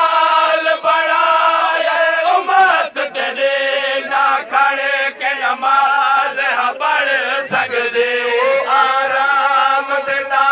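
A group of men chanting a Saraiki noha (mourning lament) in unison through a microphone, the melody wavering on long held notes.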